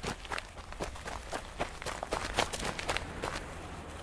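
Hurried footsteps, a quick run of short steps at about three a second, added as a sound effect for the toy characters walking off.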